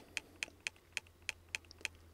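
Fire TV Stick 4K Max remote's direction button clicked about eight times in quick succession, roughly four clicks a second, each press stepping a menu highlight down one item.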